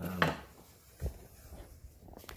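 Wooden-handled wire brush set down on a wooden workbench after brushing off weld spatter: one short knock about a second in.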